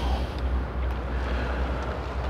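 Steady low rumble of outdoor background noise with no distinct event, like wind on the microphone or distant traffic.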